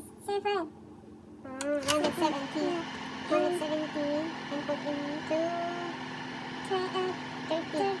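A click about two seconds in, after which the electric oven's fan runs with a steady hum as the oven is set. Voices talk over it.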